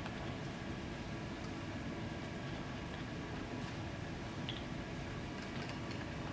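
A few faint clicks of plastic screw caps being twisted off 50 ml tubes and set down on a table, over a steady background hum.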